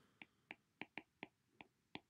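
Stylus tip tapping on a tablet's glass screen during handwriting: about seven faint, sharp clicks at irregular intervals.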